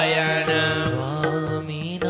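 Devotional chant sung to musical accompaniment: a singing voice bending in pitch over a steady low drone, with light percussive taps.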